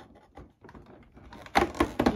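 A cardboard advent calendar door being scratched and poked at to force it open: faint scrapes and taps, then a quick cluster of sharp clicks about one and a half seconds in as the cardboard flap tears.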